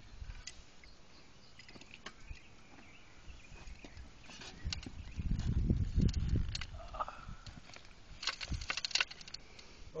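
Loose soil being packed down by hand and scraped in a trench while backfilling over a repaired clay drain tile: faint crumbling at first, a louder low rustle of dirt a little past halfway, then a flurry of short crackles near the end.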